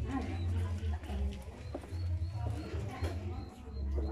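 Faint, indistinct voices of people talking, under irregular low rumbling gusts of wind on the microphone.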